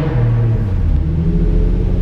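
Nissan 350Z's V6 engine heard from inside the cabin: its revs drop and it settles into a steady idle about a second in. The idle is one the owner calls "idling so stupid".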